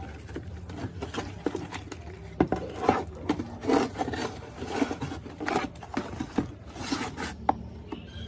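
Irregular gritty scraping and rubbing as hands work the dirt-caked plastic housing of a Puxing PX 247UR radio cassette player, with scattered sharp plastic clicks and knocks, over a steady low hum.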